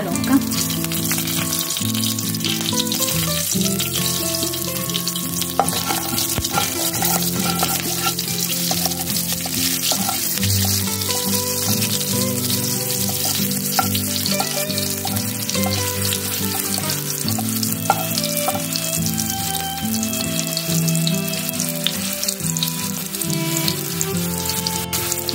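Green chillies and nigella seeds sizzling steadily in hot mustard oil in a kadai as they are stirred, with small spits and crackles. Low steady tones that shift in steps, like background music, run underneath.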